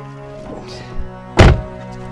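A car door being shut: one loud thunk about one and a half seconds in, with a smaller knock just before it, over sustained background music.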